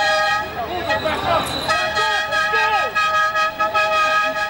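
A vehicle horn held down in long, steady blasts, breaking off for under a second about a second in, over people's voices.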